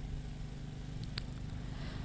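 Faint, steady low background rumble of an outdoor ground, with one faint click just over a second in.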